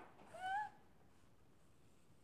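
African grey parrot giving one short whistled call about half a second in, sliding slightly upward in pitch.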